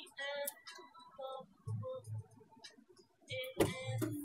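A small child singing and babbling softly to herself inside a car, then a sharp clunk near the end as the driver's door opens.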